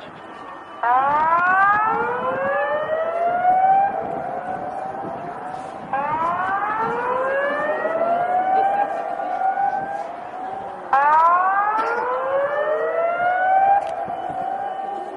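Outdoor public warning siren of the kind used for a tsunami warning, sounding three wails about five seconds apart. Each wail starts suddenly, rises in pitch for about three seconds, then trails off and lingers before the next.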